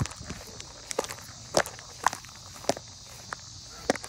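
Footsteps of a person walking quickly across grass, a soft strike about every half second, over a steady high hiss.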